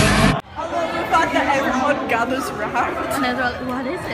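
Loud music cuts off suddenly just after the start, leaving a group of young people chattering and talking over one another.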